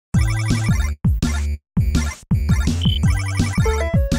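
Electronic chiptune-style music: rhythmic bleeping notes over punchy drum hits that fall in pitch, cut by brief silent gaps, with a quick rising run of beeps near the end.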